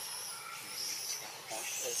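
Background with thin, high-pitched calls, and a person's voice briefly near the end.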